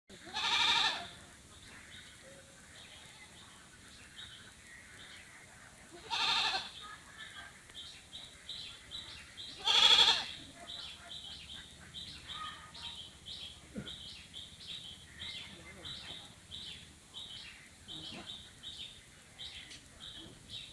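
A goat bleating three times, each call about a second long, the third the loudest. From about six seconds in, a high chirping repeats about three times a second in the background.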